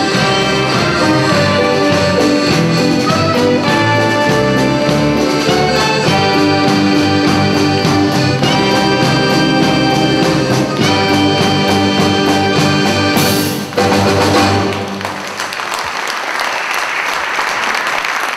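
Live band of clarinet, accordion, trumpet and other brass with rhythm section playing a lively tune that ends on a final accented chord about 13 seconds in. The audience then applauds.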